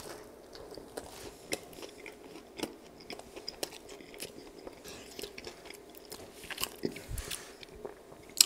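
A person biting into and chewing a toasted Subway sandwich, with scattered crisp crunches and clicks throughout and a cluster of them late on.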